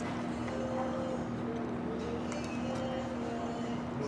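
Restaurant dining-room background: a steady low hum with indistinct voices in the distance and a few faint clicks.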